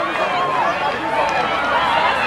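Several people talking at once: indistinct, overlapping chatter from spectators.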